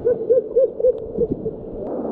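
A person's voice giving four quick hooting calls, about four a second, over the rush of water spilling over a small weir.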